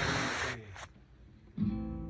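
Guitar strummed: a scratchy stroke at the start, then after a short pause a chord rings out about one and a half seconds in.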